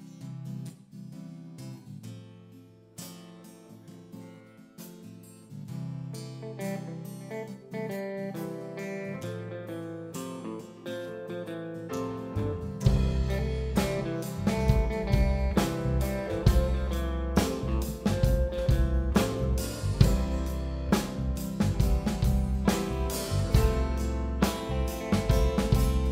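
Live band playing a song's instrumental intro: guitar alone at first, softly, then bass and drums come in about halfway through and the music gets much louder.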